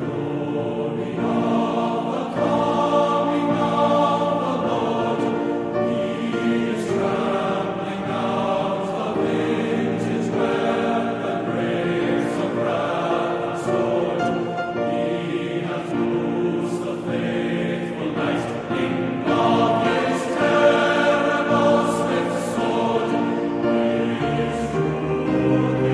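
Classical music: an ensemble holding long, sustained chords in phrases that swell and ease off every few seconds.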